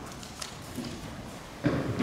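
Church room noise from the standing congregation: a few light clicks and knocks over a low murmur, with one short, louder low sound near the end.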